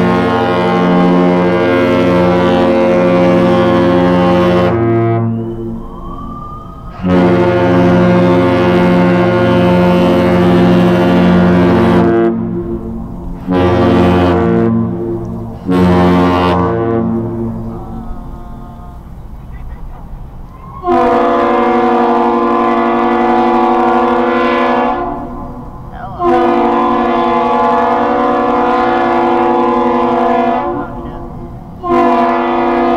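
Mesabi Miner's deep, multi-toned ship horn sounding the close of a master salute: two long blasts and two short ones. About 21 s in, the Aerial Lift Bridge's higher-pitched horn answers with two long blasts.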